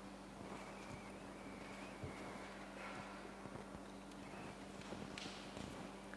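Quiet room tone of a large hall: a steady low hum with a few faint scattered knocks and rustles.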